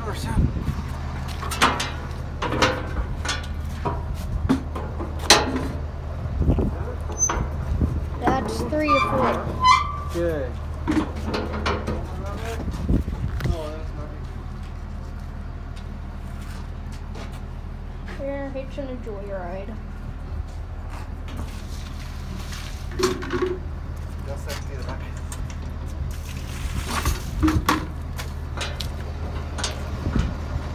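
A truck engine idling steadily underneath scattered knocks and clangs as calves are loaded into a metal stock trailer, the knocks coming thickest early on and again near the end, with voices talking.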